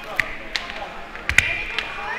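A few sharp clicks and snaps, the loudest about a second and a half in, from dried stems and plant material being handled and worked into a floral arrangement, over faint background voices.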